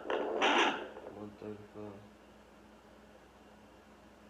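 Home fetal Doppler speaker: a loud rush of static as the probe moves over the belly, then three quick even pulses about a third of a second apart, then only a faint steady hum.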